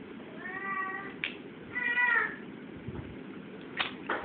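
A baby crying in two short wails, each rising and then holding its pitch, with a short click between them and another near the end.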